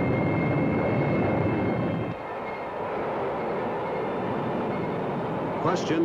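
Steady roar of a Nike Zeus test missile's rocket motor firing, louder for the first two seconds and then settling a little lower.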